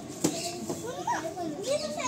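Voices chattering, children among them, with one sharp click about a quarter second in.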